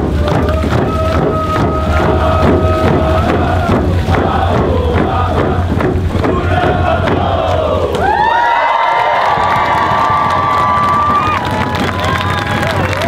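Group singing to hide hand drums beaten in a steady rhythm, the voices holding long notes. About eight seconds in, the drumming stops and the song gives way to long, high whoops and cheers from the crowd.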